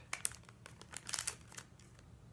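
Plastic packaging crinkling as it is handled, in two short clusters of crackles: one about a quarter second in, another about a second in.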